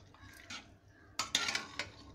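Metal spatula stirring vegetables in a metal pot, scraping and clinking against its sides: one faint clink about half a second in, then a quicker run of clinks in the second half.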